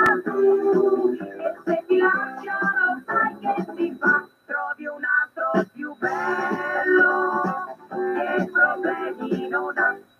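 A recorded pop song playing, with a sung lead vocal over instrumental backing.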